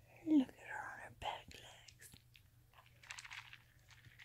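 Soft whispering from a person, with a short low grunt about a third of a second in, the loudest sound here, and a breathy hiss near the end.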